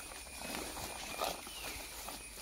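Footsteps through dense leafy undergrowth, with leaves and stems brushing and rustling against the legs: soft, irregular steps.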